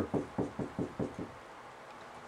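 Dry-erase marker writing letters on a whiteboard: about six quick taps and strokes of the marker tip against the board, stopping a little past the halfway point.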